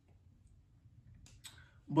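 Near silence with a few faint, short clicks about a second and a half in, then a woman's voice starting to speak at the very end.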